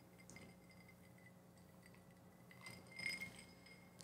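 A drinking glass clinks faintly a few times about three seconds in, over near-silent room tone with a faint steady high tone.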